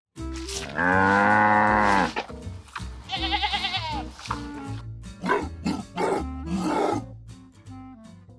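Farm-animal calls over background music: a long, loud call about a second in, a quavering bleat around three seconds in, then several shorter, rougher calls.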